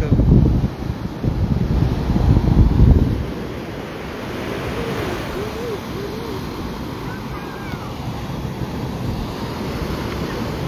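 Ocean surf breaking steadily on a sandy beach, with wind buffeting the microphone heavily for the first three seconds.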